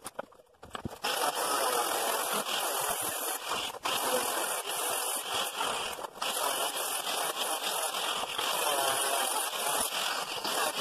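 Angle grinder with a cutting disc cutting through sheet steel. It starts about a second in and runs steadily, with two brief dips.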